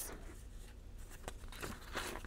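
Faint rustling and a few light ticks of paper sticker sheets being handled and flipped, over a low steady hum.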